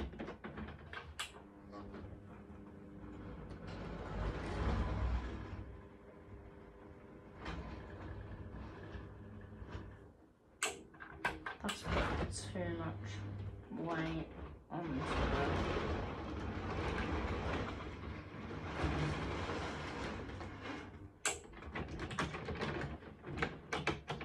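Hornby model locomotive's electric motor humming on the track in two long steady stretches. Between them come sharp plastic clicks and knocks of locomotives being lifted and set on the rails.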